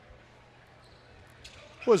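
Hushed basketball arena during a free throw: low crowd and room noise, with a couple of faint taps about one and a half seconds in.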